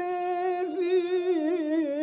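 Pontic Greek folk music: a single held melodic line, steady in pitch with quick ornamental wavers, the Pontic lyra's interlude between sung verses.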